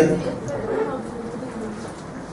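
A man's voice trails off at the start, followed by a faint, low, drawn-out hum that fades through a pause in speech.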